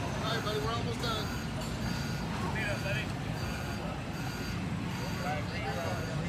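Indistinct distant voices over a steady low mechanical hum, like an engine or motor running.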